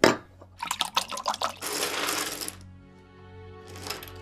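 A sharp hit, then wine glugging and pouring from a bottle into a glass for about two seconds. Near the end, light clicking of jigsaw puzzle pieces on a wooden table, over a low music drone.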